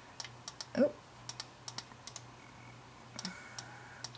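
Computer mouse clicking a dozen or so times at irregular intervals over a faint steady hum.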